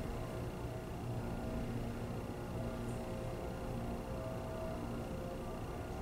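Quiet classroom room tone with a steady low hum.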